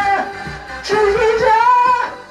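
A man singing a trot song in the original female key into a handheld microphone over a karaoke backing track. The voice breaks off about a quarter second in and comes back about a second in with a long held note.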